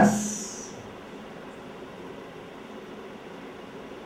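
A pause in a man's talk: the end of his last word fades out in the first moment, leaving a faint, steady hiss of background noise.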